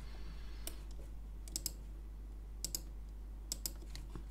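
Sharp clicks of a computer's mouse and keyboard, mostly in close pairs about once a second, over a faint steady low hum.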